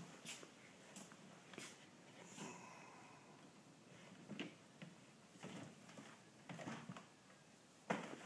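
Mostly near silence, with faint scattered clicks and knocks about a second apart from a manual wheelchair rolling out over the doorway sill onto a metal-mesh lift platform.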